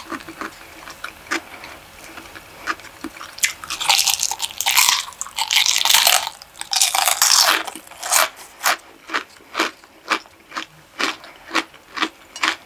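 Close-miked eating of a fried cream cheese rangoon: soft mouth clicks at first, then loud crisp crunching of the fried wonton wrapper from about three and a half to seven and a half seconds in, settling into steady chewing at about two chews a second.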